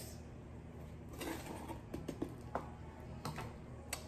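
Faint handling sounds: a few light clicks and a soft rustle as a spoonful of dry cake mix goes into a cardboard tube for a homemade rain shaker.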